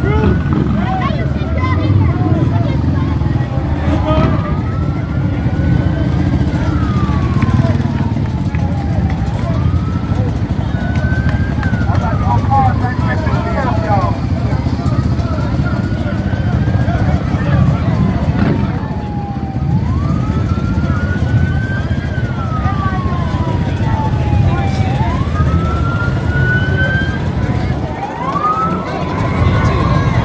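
A siren wailing, its pitch rising quickly and falling slowly about every five seconds, over a steady low rumble of vehicles and crowd voices.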